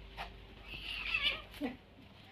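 Kitten meowing: one faint, high, wavering mew lasting under a second, about a third of the way in.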